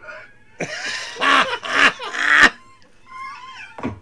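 Loud laughter in several bursts from about half a second in, loudest between one and two and a half seconds, then a quieter voice near the end.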